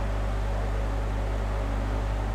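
Steady low hum under an even hiss: background noise of the room and microphone.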